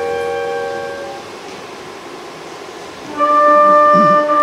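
Symphony orchestra playing held chords. One chord fades away about a second in, and a louder sustained chord enters suddenly a little after three seconds.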